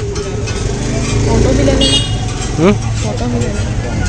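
Roadside street ambience: a steady low traffic rumble under background voices, with a brief high horn toot about two seconds in.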